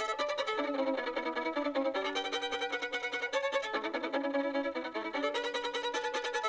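Solo violin played with a bow, a fast run of short notes that change pitch several times a second.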